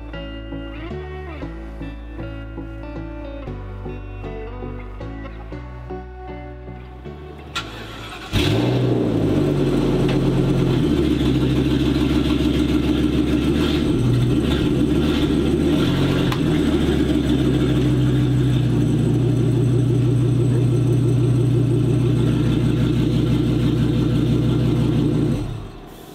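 Background music for about the first eight seconds, then the Forest River Georgetown motorhome's engine starts with a short rise in pitch and idles steadily. It stops shortly before the end.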